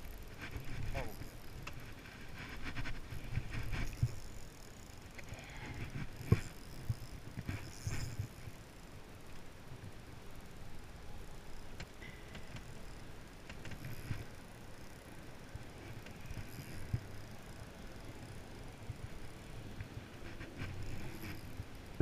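Spinning reel cranked by hand to wind in a hooked fish, with low rumbling from handling and wind and a sharp knock about six seconds in.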